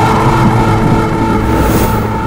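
Dark cinematic drone: a low rumble under several steady held tones. A brief hiss swells near the end, just before a beat comes in.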